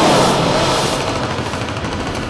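A sudden loud dramatic hit from a horror soundtrack: a boom that swells in at once and dies away slowly over about two seconds.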